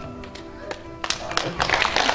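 A short stretch of music with sustained tones, then audience clapping breaks out about a second in and grows louder.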